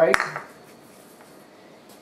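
One sharp clink of a measuring cup being knocked or set down just after the flour is tipped in, followed by quiet room tone.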